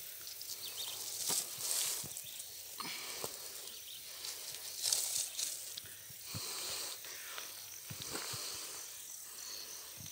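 Scattered crunches and scrapes on a gravel road as a branch is worked under a jararacuçu to lift it, with a few short hissy bursts, over a faint steady background.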